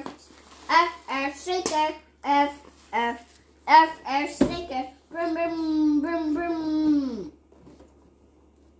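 A young child's voice in short, unclear syllables, then one long drawn-out note about five seconds in that slides down in pitch and stops a little after seven seconds.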